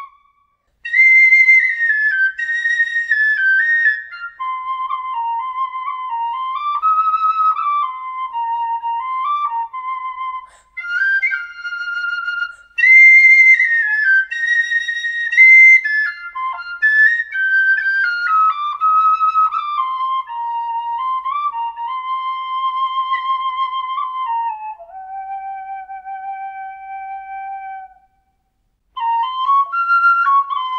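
Generation high F tin whistle playing a solo melody, one clear note at a time with short breath pauses between phrases. It settles on a long low note and stops about two seconds before the end; after a second's silence a Setanta high Eb whistle starts playing.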